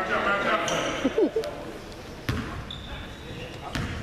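Basketball being dribbled on a hardwood gym floor, several separate bounces. Shouted voices in about the first second, and a brief high squeak a little after the middle.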